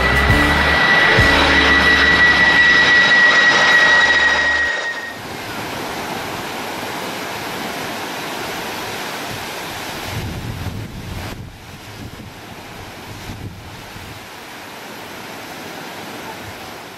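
Jet airliner passing over, loud, with a steady high whine that sinks slightly in pitch, cutting off about five seconds in. After that, sea waves break and wash on a sandy shore.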